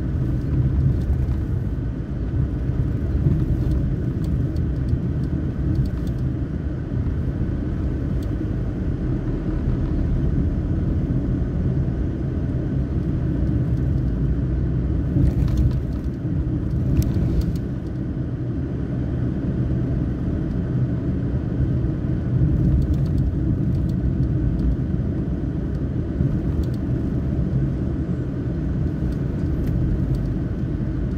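Steady low rumble of a motor vehicle travelling on the road, with a few light clicks partway through.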